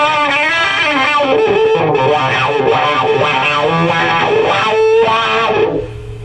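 Distorted electric guitar played through a silicon Fuzz Face and a King Vox wah fitted with a Chasetone buffer, the wah rocked so the tone sweeps up and down. No squeal, buzz or oscillation: the buffer has cured the wah's clash with the silicon fuzz. The playing stops just before the end.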